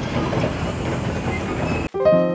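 Hydraulic breaker on a Caterpillar excavator hammering the road pavement, a loud, dense clatter that cuts off suddenly near the end.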